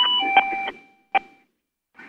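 An electronic two-note chime, a higher note stepping down to a lower one (ding-dong), sounds at the start and fades out by about a second and a half. A few sharp clicks fall over it.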